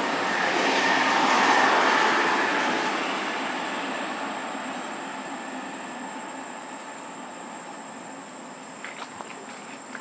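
A passing vehicle's noise that swells to a peak about a second and a half in, then fades slowly away. A few faint clicks come near the end.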